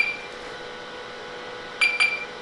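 HP 9825 desktop computer's beeper sounding two short high beeps about two seconds apart, one at the start and one near the end. They come from a test program of beeps separated by two-second waits, and show the machine is running the program even though its display stays dark.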